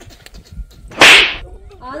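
A single loud, sharp whip-like crack about a second in, trailing off in a hissing swish within half a second.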